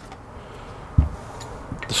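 A single dull thump about halfway through, followed by a couple of faint ticks, as a small cardboard box of spare parts is handled.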